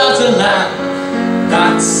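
Live male singing with accompaniment on a Yamaha digital piano: a sung phrase trails off just after the start, the piano carries on alone, and the voice comes back in near the end.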